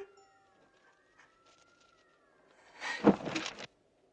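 Faint thin wavering tones, then about three seconds in a loud anguished cry that cuts off suddenly.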